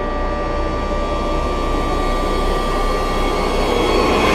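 Intro sound-design riser: a steady, jet-like rushing noise with a held tone underneath, slowly swelling in loudness.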